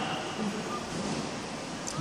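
Steady workshop background noise with faint voices in the distance.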